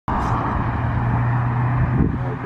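A steady low mechanical hum with a constant drone that holds an even level throughout.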